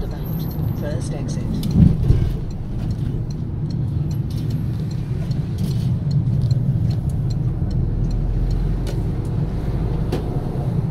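Car running along the road, heard from inside the cabin: a steady low rumble of engine and tyres, with a brief louder swell about two seconds in.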